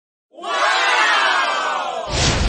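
A crowd shouting and cheering together, many voices at once, coming in sharply a moment in and holding loud.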